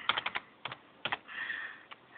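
Computer keyboard keys tapped as a password is typed: a quick run of clicks at first, then a few single, spaced-out keystrokes.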